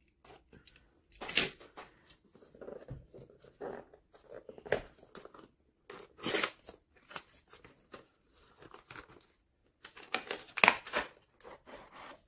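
Utility knife slitting the packing tape on a cardboard toy box, then the box being opened and its cardboard and plastic packaging handled: irregular short scrapes, rasps and rustles.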